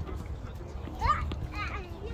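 High-pitched children's voices outdoors, shouting with a rising squeal about a second in and another call near the end, over a low rumble of wind on the microphone.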